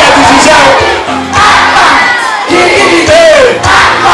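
A large crowd of children shouting and cheering loudly, many voices rising and falling together, with brief lulls.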